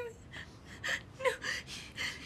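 A woman sobbing: a few sharp, gasping breaths with short whimpers between them, the sound of distraught crying.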